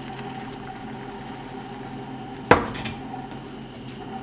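Cookware knocking: one sharp clink about two and a half seconds in, followed by a few lighter knocks, over a steady low hum.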